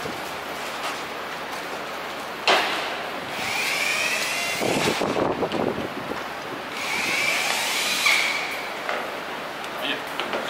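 DeWalt cordless impact driver run in two bursts of about a second or so each, its motor whine rising and falling, as bolts are driven to join two fiberglass shell sections. A sharp knock comes just before the first burst.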